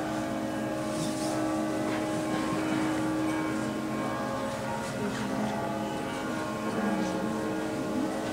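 Voices singing long held notes in Orthodox liturgical chant, with a lower voice moving in pitch near the end.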